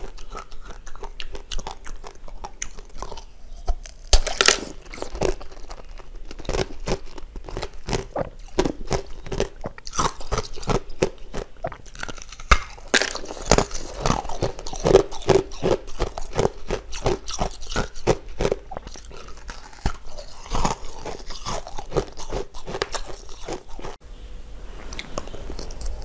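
Hard ice being bitten and chewed close to the microphone: a dense run of sharp crunches and crackles, with bursts of rapid crunching that are busiest through the middle stretch.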